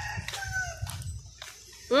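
Quiet background with a few faint clicks from biting and chewing french fries, then near the end a hummed 'mm' of enjoyment whose pitch rises and then falls.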